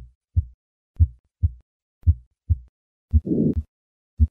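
Heart sounds: three normal lub-dub beats about a second apart, then near the end a beat with a systolic ejection murmur filling the gap between the first and second heart sounds. This is the murmur of hypertrophic cardiomyopathy.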